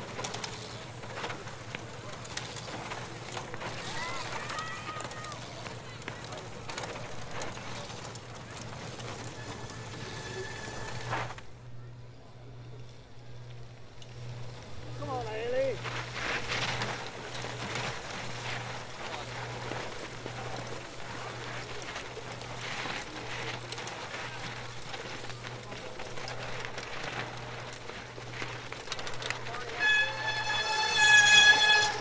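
Outdoor cyclocross course ambience: indistinct spectator voices and calls, with bike tyres crunching and skidding over dry, loose dirt as riders descend a steep slope. The sound briefly dips about eleven seconds in.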